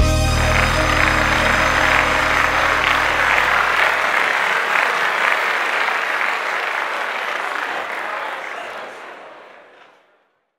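Audience applause starts suddenly at the end of a song and slowly fades out near the end. Under it, the last held chord of the backing music dies away during the first few seconds.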